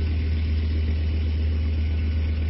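Engine of a tracked firefighting vehicle converted from a battle tank, running steadily with a deep, even hum while its water cannon sprays.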